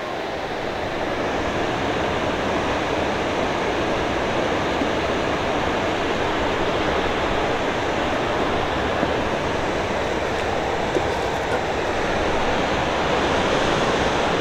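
Steady rushing of white water from Onaping Falls, an even noise that holds at one level throughout.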